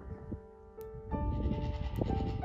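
Background music with held notes. About a second in, a goat bleats, louder than the music.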